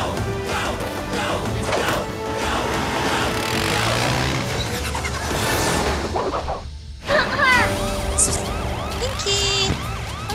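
Cartoon soundtrack: upbeat action music with vehicle engine and siren sound effects as the rescue vehicles drive off. It breaks off for a moment about seven seconds in, then goes on with short chirping effects over the music.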